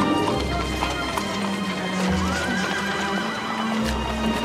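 The series' orchestral score playing under horse sounds: hooves clip-clopping and, about two seconds in, a horse whinnying in one wavering cry of about a second.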